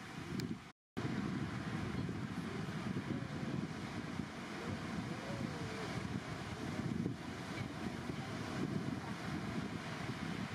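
Wind buffeting the microphone over the steady wash of ocean surf breaking on a beach, with the sound cutting out completely for a moment about a second in.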